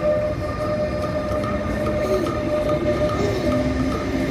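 An ÖBB Taurus electric locomotive hauling double-deck coaches moving through the station: a steady electric whine with a few gliding tones over the continuous rumble of the wheels.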